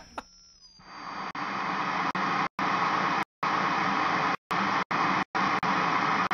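Electronic static-like hiss from an end ident, swelling in about a second in and then steady, broken several times by sudden cut-outs to silence in a glitchy stutter.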